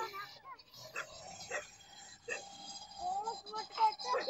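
Children's voices calling and chattering, loudest in the last second, with a few short sharp sounds in the quieter middle stretch.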